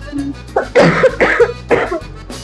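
A woman coughing three times in quick succession, her mouth and nose covered with a cloth, over soft background music.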